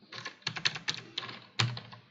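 Typing on a computer keyboard: a quick, irregular run of key clicks, about a dozen keystrokes.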